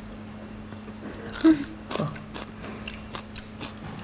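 A person chewing food with an open mouth and smacking: a run of short, sharp clicks.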